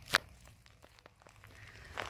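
Footsteps on a woodland path, with one sharp crack just after the start, followed by a few faint ticks.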